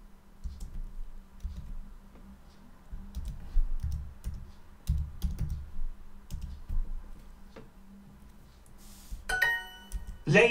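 Typing on a computer keyboard: irregular key clicks and thumps as a sentence is typed in. Near the end comes a short, bright chime from the language-learning app, marking the answer as correct.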